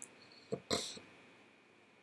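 A man's faint mouth click, then a short, quick breath in through the nose about half a second in.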